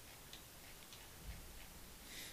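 Faint ticks of a computer mouse scroll wheel, a few irregular clicks over quiet room tone.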